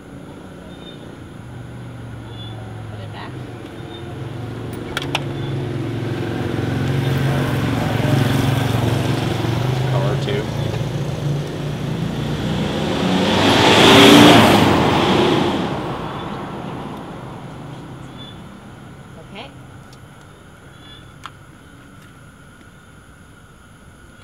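A motor vehicle approaches with its engine running, passes close by about fourteen seconds in with a rush and a falling pitch, then fades away.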